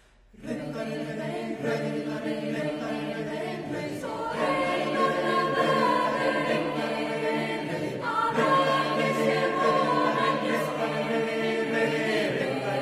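Choir singing held chords, entering about half a second in after a brief silence, with new phrases beginning about four and eight seconds in.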